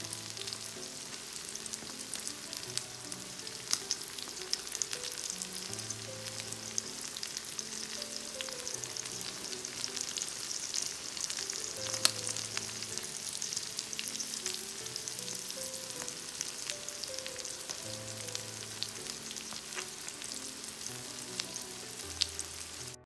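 Scallops sizzling as they grill: a steady crackle with frequent sharp pops. Quiet background music with a slow melody plays underneath.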